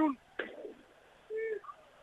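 A short, low, steady hum-like vocal sound, a man's brief "mm" between phrases of commentary, heard over a narrow, phone-like line.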